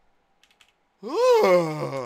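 A man lets out a long voiced groan about a second in, its pitch rising and then sliding down, after a few faint clicks.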